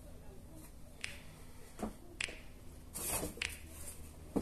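A few faint, sharp clicks and taps, with a brief rustle about three seconds in, as a person shifts on hands and knees on a thin exercise mat.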